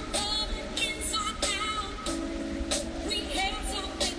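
A live band playing, with drum kit, electric guitar and keyboard, and a woman singing over it; drum hits fall at a steady beat.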